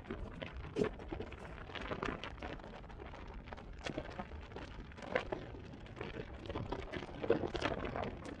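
Wind buffeting the microphone of a camera on a motorcycle moving at road speed, heard as irregular crackles and gusts over a constant low rumble.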